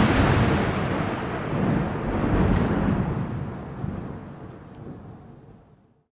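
Thunder sound effect: a long rumbling roll that swells again about two seconds in, then dies away to silence just before the end.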